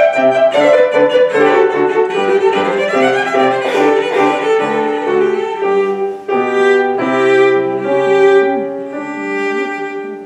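Cello and grand piano playing a classical piece together: long bowed cello notes over piano chords, getting quieter near the end.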